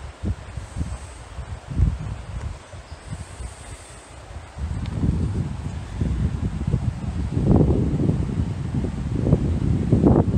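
Wind rumbling on the microphone in uneven gusts, getting louder about halfway through.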